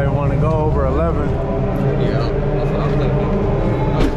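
A Chevrolet pickup truck's engine idling steadily, with voices over it.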